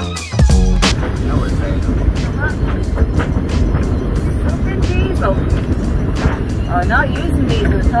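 Wind blowing across the microphone on a sailing yacht under sail in a fresh breeze, a dense, steady low rumble. Electronic music ends about a second in.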